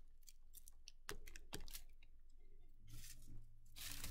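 Faint scattered clicks and paper rustles from a glue stick and tissue-paper streamers being handled on a paper bag.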